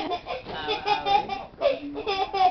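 Laughter in quick, repeated short bursts, nasal and honk-like, rising and falling in pitch.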